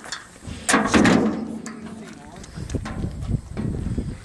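A 1964 Austin Mini Moke's A-series four-cylinder engine being started: it catches with a loud burst a little under a second in, then runs with a rough, pulsing idle.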